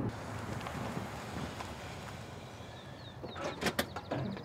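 Street ambience with a car rolling in: a steady hiss of tyres and engine. Near the end come a few sharp clicks and some short high chirps.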